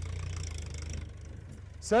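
A low, steady engine rumble with an even pulse, like an idling motor, fading away over the first second and a half; a man's voice begins at the very end.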